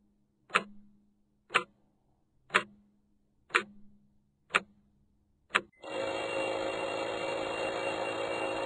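Clock sound effect ticking once a second, six sharp ticks. About six seconds in, an alarm clock starts ringing, loud and steady, the wake-up alarm.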